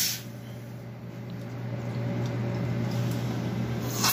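Commercial espresso machine: a loud steam hiss cuts off right at the start, then a steady low hum with a soft rumble that slowly grows louder.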